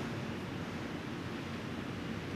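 A pause in speech: steady, featureless background hiss of the room's ambient noise, with no distinct sound event.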